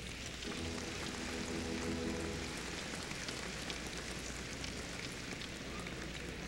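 Arena crowd applauding a player's introduction, a steady crackle of many hands clapping. A low held musical chord sounds over it for about the first two seconds.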